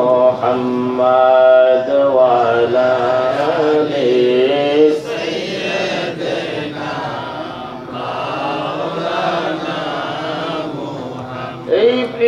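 A man chanting a devotional melody into a microphone, holding long wavering notes, strongest in the first few seconds and a little softer later on.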